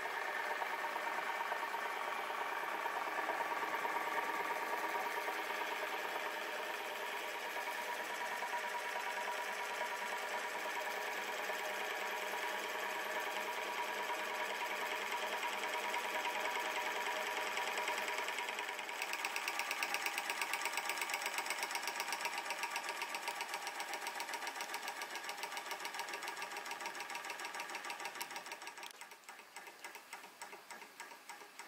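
Huxtable hot air (Stirling-type) model engine running steadily, its moving parts giving a fast, even mechanical clatter. Near the end it grows quieter and the beat is heard as separate ticks.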